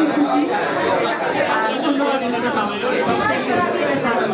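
Speech only: a woman talking into a handheld microphone, with the chatter of other people around her.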